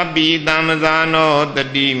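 A man's voice chanting a short phrase over and over in a melodic Buddhist recitation, the syllables drawn out on held notes, with a steady low hum underneath.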